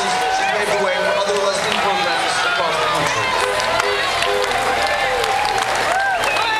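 Street crowd of parade spectators cheering and shouting, many voices overlapping, with some scattered clapping.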